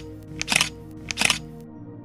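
Background music with sustained tones, overlaid with two short camera-shutter click sound effects, about half a second and about a second and a quarter in.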